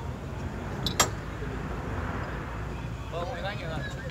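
Off-road 4x4 engine running with a low, steady rumble as the vehicle crawls up a steep rocky slope. A single sharp knock comes about a second in.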